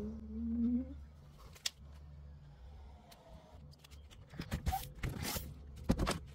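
Mityvac hand pump pushing transmission fluid slowly through a hose into a CVT fill hole. A faint squeak rises in pitch in the first second, with a light tap, then a few short hissing, scraping sounds come about four to five seconds in.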